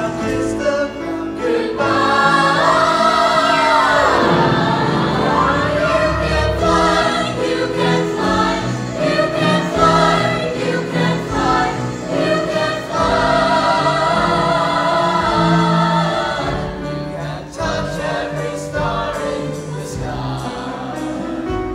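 Mixed high school choir singing part of a Disney song medley, with orchestral accompaniment including strings.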